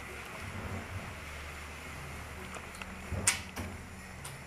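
Thin plastic fish bag being handled over a plastic cup: a few light crinkles and clicks and one sharp plastic click a little past three seconds in, over a steady low hum.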